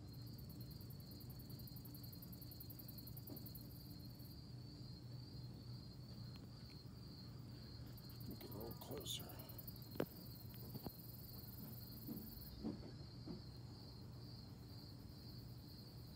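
Insects trilling in the background: a steady, high, pulsing trill throughout, joined by a second, even higher rapid pulsing that comes and goes twice. A faint low hum runs underneath, with a few soft clicks near the middle.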